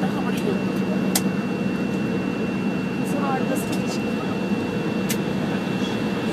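Cabin noise of an Embraer 170 taxiing on the ground: the steady rumble of its General Electric CF34-8E turbofans with a thin, steady high whine and a low hum. A few sharp clicks come about a second in and again near the end.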